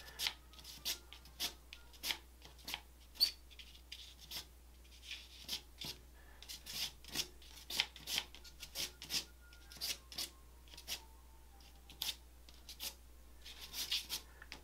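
Stick of vine charcoal scraping across gesso-textured paper in short strokes, a quick irregular run of dry scratches.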